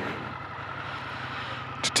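Indian FTR 1200S motorcycle's V-twin engine idling steadily.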